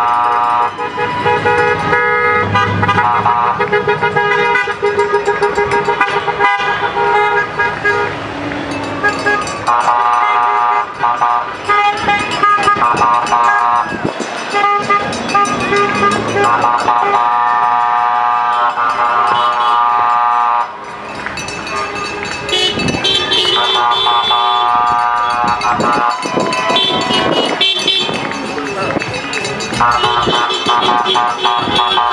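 Car horns honking as a line of cars drives slowly past, several horns at different pitches overlapping, often held for several seconds with short gaps between.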